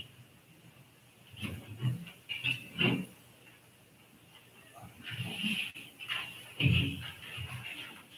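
Quiet, intermittent off-microphone voices and movement noises in a large hall, in two short spells, with a single click a little before six seconds in.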